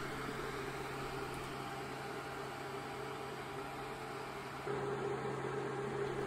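Steady whir of an HP ProLiant DL580 G4 server's cooling fans running, with a constant low hum; the sound shifts slightly about three-quarters of the way through.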